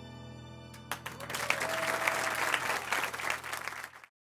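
The final chord of grand piano and keyboard rings out, then an audience breaks into applause about a second in, and the sound cuts off abruptly at the end.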